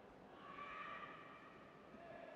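Faint arena background with one faint, drawn-out vocal call held for about a second, starting about half a second in.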